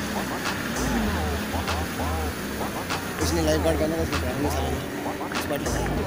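Wind buffeting the microphone in uneven low gusts, with indistinct voices talking in the background and a few sharp clicks.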